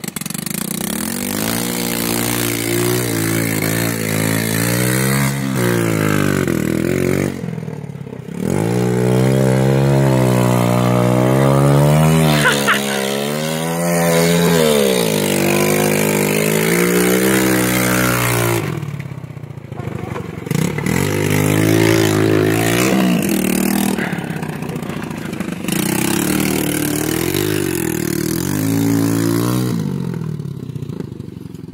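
A Ram 170cc quad bike's engine revving up and down over and over as it is ridden through deep muddy puddles. The sound breaks off abruptly a few times.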